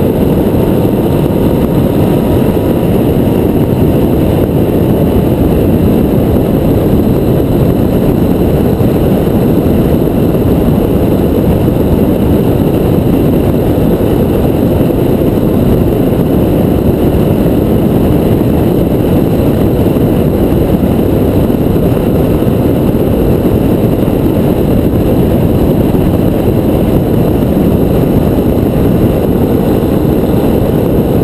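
Touring motorcycle cruising at a steady road speed, heard from on the bike: a loud, even rush of wind on the microphone mixed with engine and road noise, unchanging throughout.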